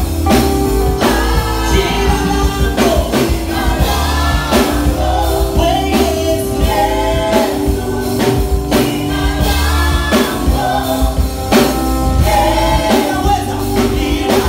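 A gospel praise team singing a Swahili worship song in several voices, backed by a live band with a steady drum-kit beat and sustained bass and keyboard tones.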